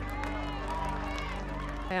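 Indistinct crowd chatter, scattered voices talking at once, over a low steady drone; both stop abruptly near the end.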